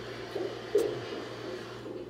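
Handling noise as a small round car speaker is pushed down into its opening in a bare dashboard, with one sharp click about a third of the way in.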